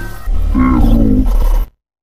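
Logo intro sting of designed sound: a heavy low rumble under a wavering pitched tone, which cuts off abruptly just before the end, leaving silence.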